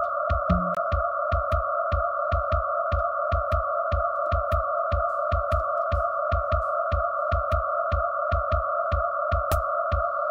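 Live electronic music: a steady, hissing two-band drone with a fast, even pulse of low kick-like thuds and sharp clicks, about four a second.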